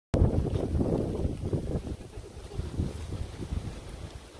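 Low, irregular rumble of wind buffeting a phone microphone, loudest in the first two seconds and easing off after.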